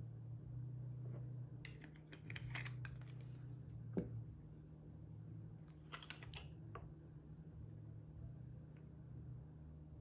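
Faint light clicks and taps of small plastic bottles, caps and vials being handled on a tabletop, in two short flurries with one sharper knock about four seconds in. A steady low hum runs underneath.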